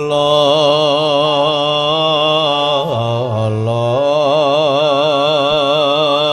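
A man's voice singing one long sustained note with a steady vibrato, in the style of a dalang's suluk (mood song) in Javanese wayang kulit. The note starts abruptly, and its pitch dips and shifts briefly about three seconds in.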